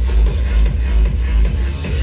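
Loud trance-style electronic dance music from a DJ set, with a heavy, steady kick drum. The kick briefly drops out near the end.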